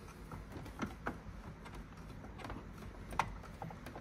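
Screwdriver turning a screw out of a bracket: a few faint, scattered clicks and scrapes, the clearest about three seconds in.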